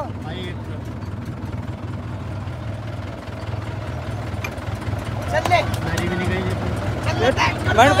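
Mahindra 575 tractor's diesel engine idling with a steady, low, even rumble.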